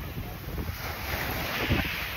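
Wind buffeting the microphone in gusts, with surf washing onto the shore behind it.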